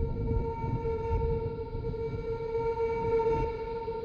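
A single sustained tone held steady over a low, rough rumble: the opening drone of a film trailer's soundtrack.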